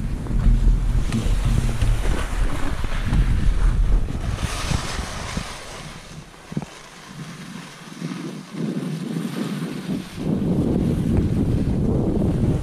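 Wind buffeting the camera microphone in a heavy low rumble while skiing downhill, with the hiss of skis sliding over snow. The rumble drops away for a few seconds past the middle, then comes back.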